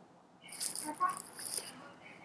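A brief rattling sound, about a second long, starting about half a second in.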